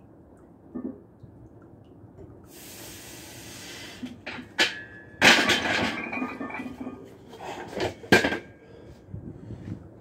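A steel barbell loaded with 275 lb clanking against the bench's rack uprights: a loud metal clank about five seconds in with a short ringing after it, and a second clank about three seconds later, with a hiss and a couple of small clicks before the first.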